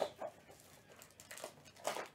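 Handling noise from a cardboard trading-card box and its packaging: a few soft clicks and rustles, with a sharper click near the end.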